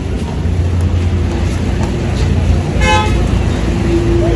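Steady low rumble of road traffic, with one short vehicle horn toot about three seconds in.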